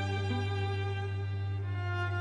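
Orchestral string music: a violin line over a sustained low note.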